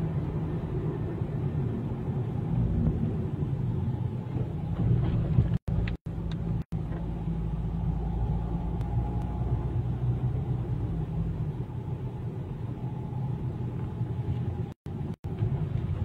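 Steady low rumble of a car being driven, engine and road noise heard from inside the cabin. The sound cuts out completely for an instant three times about six seconds in and twice near the end.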